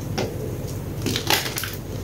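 Block of gym chalk crunching and crumbling as hands squeeze and break it apart: a small crunch just after the start, then a larger burst of crunching a little past halfway.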